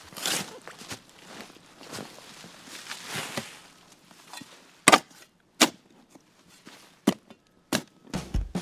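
A long-handled digging tool working the soil and roots around a tree stump: scraping and rustling through earth and dry leaves, then four sharp chopping strikes in the second half.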